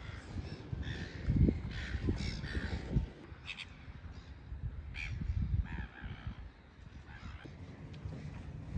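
A bird calling several times in short, separate calls, over low rumbling noise.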